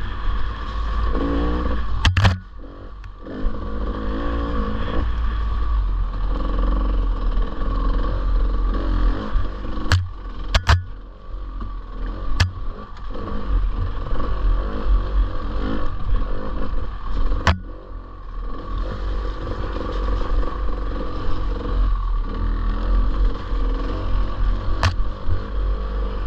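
Off-road dirt bike engine running over a rough trail, rising and falling with the throttle and dropping off briefly twice, with several sharp knocks from the bike over bumps.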